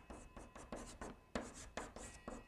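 Chalk writing on a blackboard: a quick run of short scratches and taps, several a second, as Chinese characters are written stroke by stroke.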